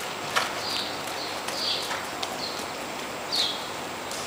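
Horse trotting on soft dirt arena footing, with short high chirps every half second or so and a couple of sharper knocks.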